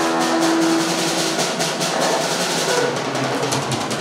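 Live band instrumental in which the drum kit plays a rapid fill of snare and drum hits, growing denser toward the end, under held keyboard notes that drop out about a second and a half in.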